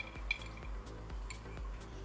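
A few faint clinks of a toothbrush knocking against the inside of a water-filled glass jar while scrubbing it, over faint background music.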